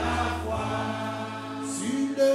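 Many voices singing a hymn together over sustained low bass notes from an accompanying instrument.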